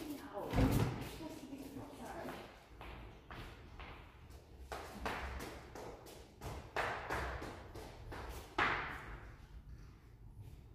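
Footsteps walking away across a large, echoing hall, growing fainter, with a heavy thud about half a second in. A few louder knocks come in the second half.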